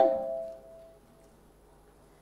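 The tail of a spoken question dies away, leaving a faint steady two-note ringing tone, typical of a conference microphone and speaker system, that fades out about a second in. Then comes near-silent room tone.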